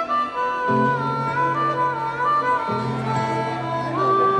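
Live band playing an instrumental intro: a lead melody line with sliding notes over held chords that change about a second in and again near three seconds.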